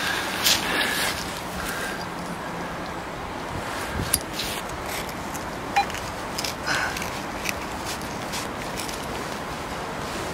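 Hands digging in loose soil and roots around a buried glass bottle: scattered short scrapes, crumbles and knocks over a steady background hiss.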